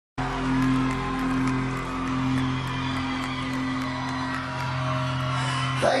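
Live rock band holding one long sustained chord, with crowd noise over it; the chord cuts off near the end.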